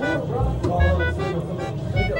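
Arcade noise: electronic music and beeping sound effects from game machines mixed with voices, over a heavy low rumble that pulses on and off.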